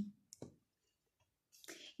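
Near silence in a small room, broken by one faint click about half a second in and a short intake of breath just before speech resumes.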